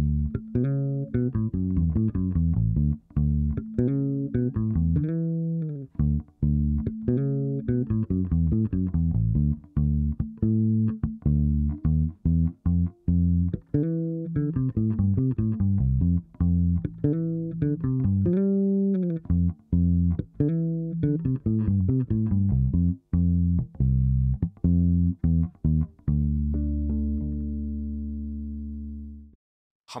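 Solo Hayman 40/40 electric bass, fingerpicked, playing a slowed-down funk lick of major seventh arpeggios that move in parallel from Dmaj7 to Fmaj7, with ghost notes, hammer-ons and slides. Near the end it ends on a few ringing harmonics that die away.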